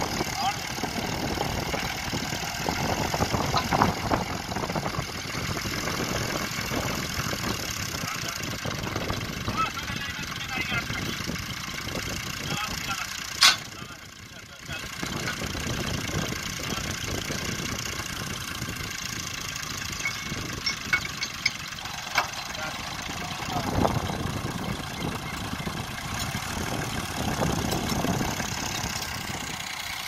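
Massey Ferguson 240 tractor's three-cylinder diesel engine idling steadily, with a sharp click about halfway through and a few lighter clicks later.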